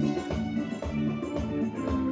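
Live band playing an instrumental passage: guitars and keyboard over a steady beat from the percussion, with no singing.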